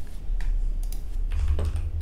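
Computer keyboard typing: a few separate key clicks over a low steady hum.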